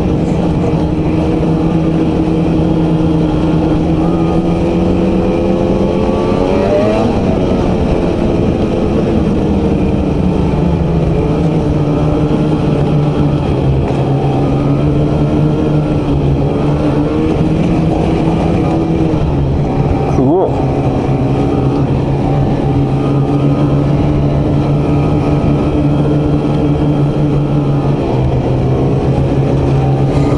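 Ski-Doo two-stroke E-TEC snowmobile engine running steadily under way on the trail. Its pitch climbs about six or seven seconds in, drops back, and settles lower through the second half.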